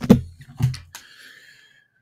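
Handling noise as a wireless headset is lifted off a desk microphone: two knocks with low bumps in the first second, then a faint thin tone that fades away.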